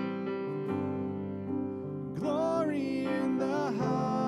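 Live worship song: electric keyboard chords held steadily, then a woman's voice sings a slow line with wavering pitch starting about halfway through, over the keyboard.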